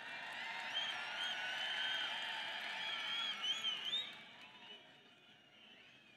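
A large crowd cheering and shouting, a mass of many voices at once, fading away after about four seconds.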